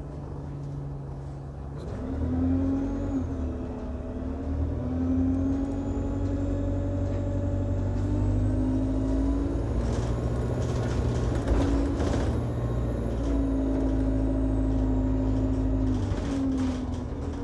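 Alexander Dennis Enviro200 Dart bus's diesel engine heard from inside the passenger cabin: it runs low, then picks up about two seconds in as the bus pulls away, its note rising and dropping in steps as it works through the gears. A faint high whine rises and falls over the middle.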